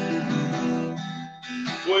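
Acoustic guitar strummed as a song's introduction, the chords ringing out, with a fresh strum about one and a half seconds in.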